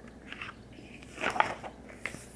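Quiet room tone. Just past the middle comes a short cluster of small wet mouth clicks and a soft breath.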